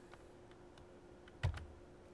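A single sharp click with a low thump about one and a half seconds in, after a few fainter ticks, over a faint steady hum: a key or mouse button pressed to advance the lecture slide.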